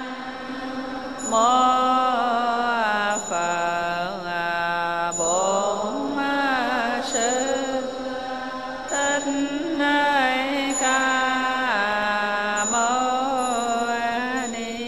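A voice chanting a Buddhist invocation in several long phrases of held, slowly wavering notes.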